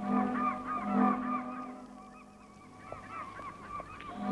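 Seagulls crying over and over, in a thick flurry of calls at first, thinning out in the middle and building again near the end, over a low steady hum of harbour ambience.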